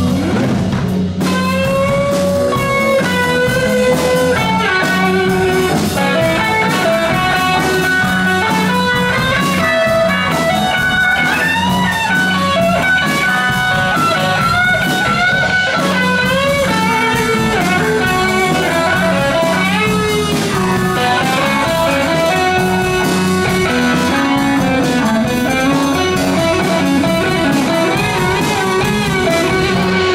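Live rock band playing a seventies-style rock number: electric guitars to the fore over bass guitar and drum kit, with notes bending and sliding in the lead line.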